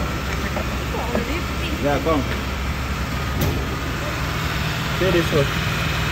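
Car engine idling steadily with the air conditioning switched on.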